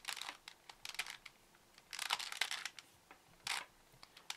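Plastic layers of a Rubik's 2x2 cube clicking and clacking as they are turned by hand, in quick bursts of several turns: one at the start, one about a second in, a longer one around two seconds and a last click near the end.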